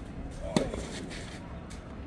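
Tennis racket striking the ball once, a sharp crack about half a second in, during a rally.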